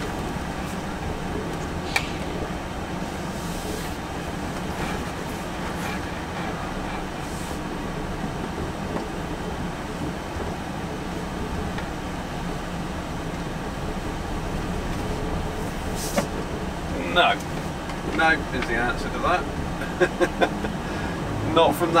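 Volvo FH lorry moving slowly along a rough farm track, heard from inside the cab: a steady low engine drone with road rumble, and a sharp click about two seconds in and another later on.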